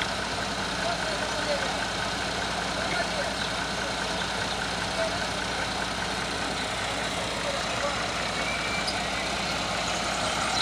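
Heavy diesel engine idling steadily, with men's voices in the background.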